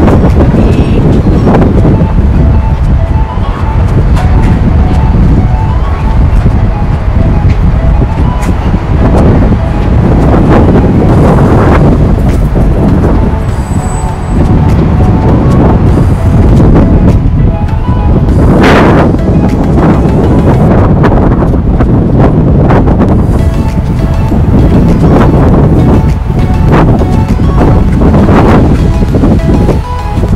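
Strong wind buffeting the phone's microphone in a loud, steady rumble, with background music running faintly underneath.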